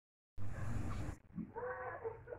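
A loud burst of noise lasting under a second that cuts off sharply. About a second and a half in, a short, clearly pitched animal call follows.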